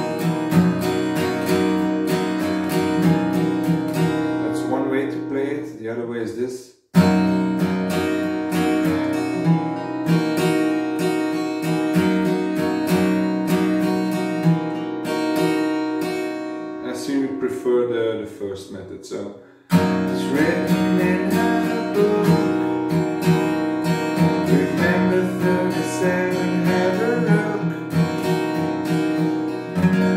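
Steel-string acoustic guitar, capoed at the 2nd fret, strummed in a steady rhythm through a slow ballad's verse chords. Twice the strumming stops and the chord rings out and dies away before the strumming starts again sharply.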